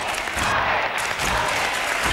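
A large studio audience applauding, a dense, steady clapping throughout.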